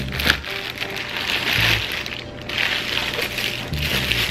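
Plastic packaging crinkling and rustling in patches as a lens in a plastic bag is drawn out of its box, with background music under it.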